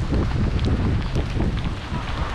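Gusty storm wind buffeting the microphone: an uneven, low rumble.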